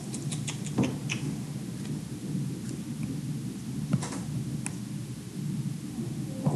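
Low rumbling room noise with a few scattered light clicks and taps, as a stylus writes on an interactive whiteboard.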